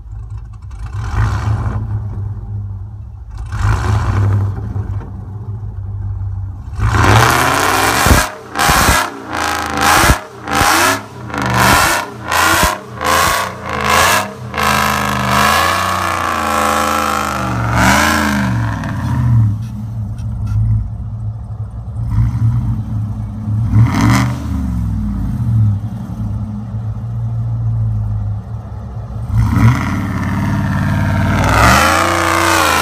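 Supercharged, cammed pickup truck engine revving hard as the truck spins its wheels through deep snow. Near the middle it comes in a quick series of sharp bursts, then the revs rise and fall several times.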